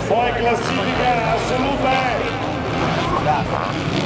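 Enduro motorcycle engines revving on an indoor dirt track, heard under a public-address announcer's voice.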